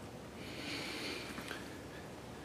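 A faint breath near the microphone: a soft hiss lasting about a second, over quiet room tone.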